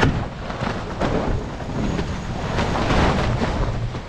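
Wind buffeting the camera microphone in heavy, uneven gusts over rushing and splashing water, from a sportsboat sailing fast under spinnaker.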